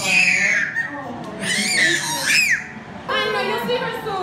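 A toddler crying out in high wailing squeals: two bouts in the first couple of seconds, the second ending in a falling cry.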